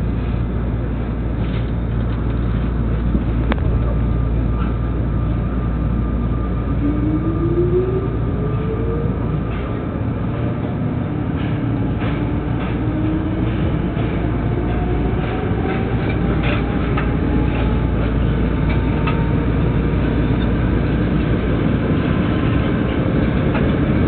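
Tokyo Metro Ginza Line subway train pulling away from the platform and accelerating, heard from inside the car: a steady heavy rumble with scattered clicks from the rails, and from about seven seconds in a motor whine that climbs slowly in pitch as the train gathers speed.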